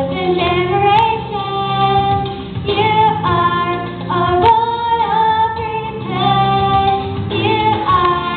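A young girl singing a solo into a handheld microphone over instrumental accompaniment, in phrases of long held notes.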